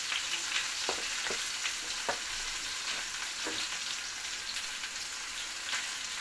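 Raw banana pieces sizzling in hot oil in a black kadhai. A slotted metal spoon scrapes and knocks against the pan a few times as they are stirred.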